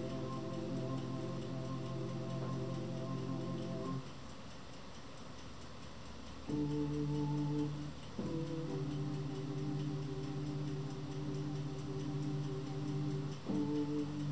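Casio XW-series synthesizer played slowly in long held chords with a steady, organ-like sustain that does not fade. The first chord stops about four seconds in; after a short gap a new chord comes in, changes a little after eight seconds, and changes again near the end.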